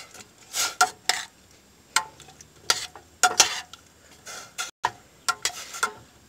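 A metal utensil stirring cubed potatoes in water in a stainless steel pot, with irregular clinks and scrapes against the pot's side.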